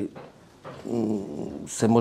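A man's drawn-out hesitation sound, a held 'uhh' lasting about a second, between phrases of his speech.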